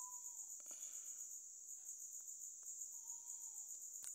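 Faint, steady, high-pitched chirring of crickets in the background, with two faint brief tones, one at the start and one about three seconds in.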